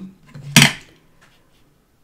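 Clear acrylic stamp block set down onto card: one short sharp clack about half a second in.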